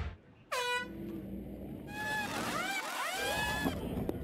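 Pneumatic impact wrenches working a stock-car pit stop tire change. A short falling whine comes about half a second in, then several overlapping whines rise and fall in pitch in the second half.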